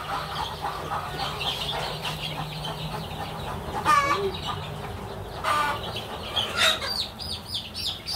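Ten-day-old free-range chicks peeping continuously in a brooder box while being caught by hand, with a few louder, falling cheeps standing out about halfway through and near the end.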